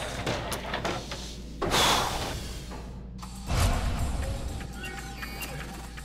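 Airlock effects: bursts of hissing released air, the second cutting off abruptly about three seconds in, followed by a deep low thud, under background music.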